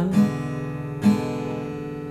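Acoustic guitar strumming an E7 chord, two down strums about a second apart, each left to ring.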